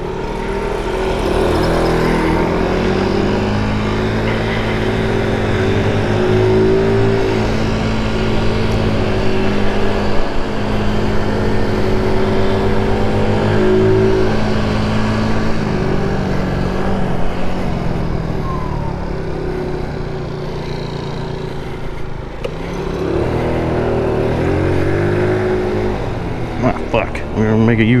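GY6 single-cylinder four-stroke scooter engine pulling away and riding: revs climb at the start, hold fairly steady for a long stretch, drop off about two-thirds of the way in, and climb again near the end.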